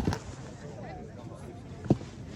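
Two short, dull thumps, one at the very start and one near the end, over faint background voices and chatter.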